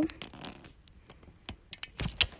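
Handling noise on a handheld phone's microphone as it is moved: faint rustling with a few sharp clicks in the second half.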